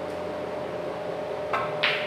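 A pool cue striking the cue ball, then a brighter click about a quarter second later as the cue ball hits the yellow object ball on a bar pool table, both near the end, over a faint steady hum.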